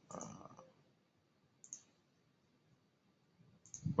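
A short spoken "uh", then a single faint, sharp click about a second and a half in, a computer mouse button being pressed.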